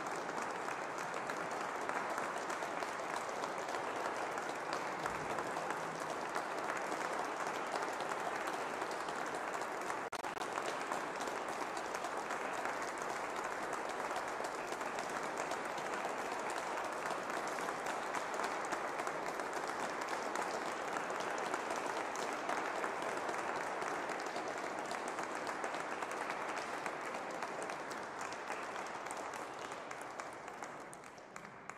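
Audience applauding steadily at the close of a piano recital, tailing off near the end.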